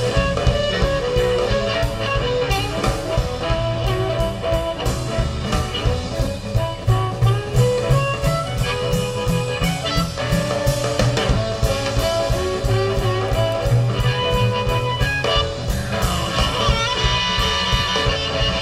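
Live blues band playing an instrumental passage: electric guitar over upright bass and a drum kit keeping a steady beat.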